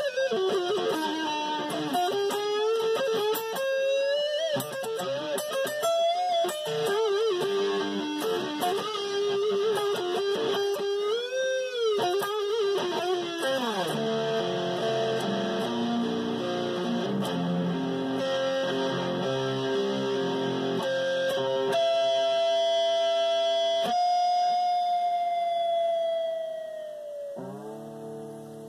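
Jackson electric guitar with a reverse headstock played solo, unaccompanied: lead lines with wavering bends and vibrato, a big swooping bend about halfway, then picked notes. Near the end comes a long held note that sinks in pitch.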